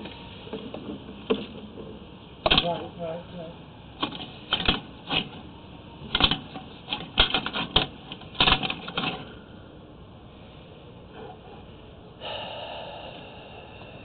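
Irregular sharp clicks and knocks as a sewer inspection camera's push cable is fed down the drain line. A steady hiss starts near the end.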